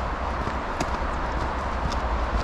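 Footsteps on an icy, snow-packed road, a few sharp steps roughly a second apart, over a steady background rumble.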